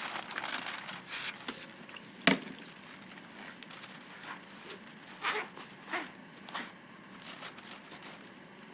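Scattered rustling and crinkling handling sounds, with one sharp tap a little over two seconds in.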